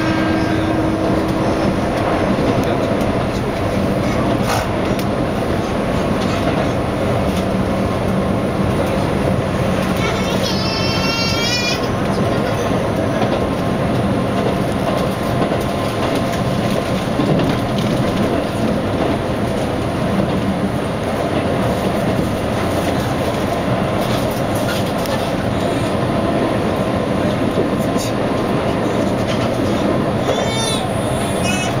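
Keihan limited express train running, heard from inside the cab: a steady rumble of wheels on rails. A steady horn-like tone sounds for the first couple of seconds, and a brief wavering high squeal of the wheels comes about ten seconds in.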